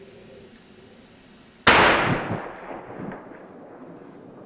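A single loud gunshot less than halfway through, with its echo rolling away over about a second.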